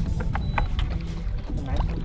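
Low rumbling noise of wind and water around an open fishing boat on a lake, with a few light clicks and faint background music under it.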